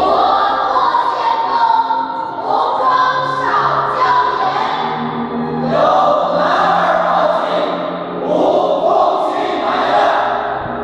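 Choral music: a choir singing long, swelling phrases over musical accompaniment.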